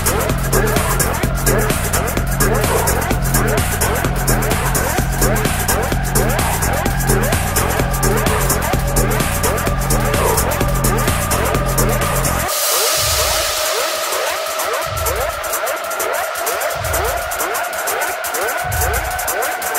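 Minimal techno DJ mix: a steady beat and bass under long synth tones that slowly rise in pitch. About twelve and a half seconds in, the bass and kick drop out and a wash of hiss comes in, leaving the rising tones over bass swells every couple of seconds.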